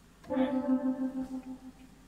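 A single synthesizer note from a Prophet Rev2, held at one steady pitch with a stack of overtones, pulsing slightly in level and fading away over about a second and a half.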